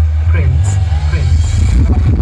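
Very loud outdoor DJ sound system playing bass-heavy music, the deep bass dominating, with a voice over it.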